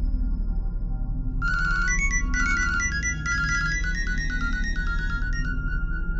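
A mobile phone ringtone, a quick melody of high electronic notes, starts about a second and a half in over low, steady background music.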